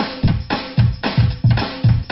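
Drum kit playing a steady beat of bass drum and snare, the opening groove of a song.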